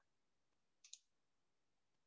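Near silence, broken by one faint, short click a little under a second in.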